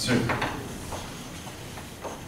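Chalk writing on a blackboard: several short taps and scratches as the letters are stroked out.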